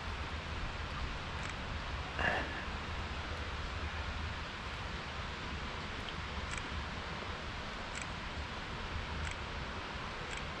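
Shallow creek water running steadily over shale, with low wind rumble on the microphone and one short, soft sound about two seconds in.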